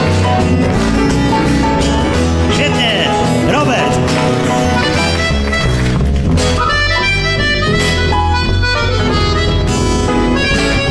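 Instrumental solo break of a rock and roll song played live: accordion leading over a stepping double bass line, with piano and acoustic guitar.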